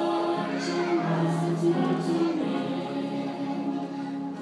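Church choir singing a slow hymn, the voices holding long sustained notes.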